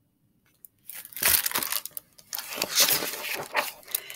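Pages of a hardcover picture book being turned and the book handled: paper rustling and sliding that starts about a second in and runs in several strokes.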